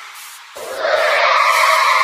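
Electronic DJ remix at a break: the bass and beat drop out, and about half a second in a noisy, screeching effect swells up and holds.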